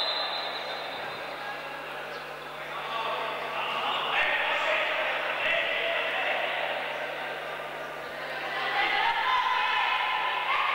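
Echoing indoor sports-hall ambience during a futsal match: a jumble of players' and spectators' voices calling out, with a ball bouncing on the hard court.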